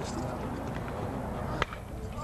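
A baseball bat hitting a pitched ball: a single sharp crack about one and a half seconds in, over faint crowd noise.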